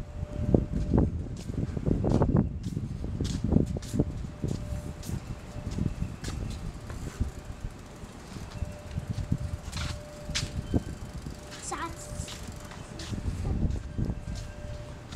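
Small child's bicycle riding over a tiled terrace: irregular tyre rumble on the tiles with scattered clicks and knocks from the bike, mixed with low rumbling handling noise.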